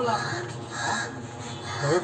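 Indistinct voices of onlookers talking.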